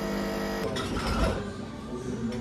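Commercial espresso machine's pump running with a steady buzz as a shot pours. About two-thirds of a second in, the buzz gives way to a rougher, noisier sound.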